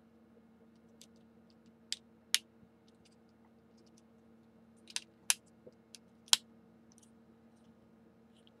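Hard plastic action-figure parts clicking and snapping as armour pieces are pressed onto the figure: a handful of sharp clicks, in two clusters about two seconds in and from about five to six and a half seconds in. A faint steady hum lies underneath.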